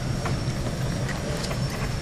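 Steady low background rumble and hiss, with faint rustling and soft ticks from hands handling newborn puppies.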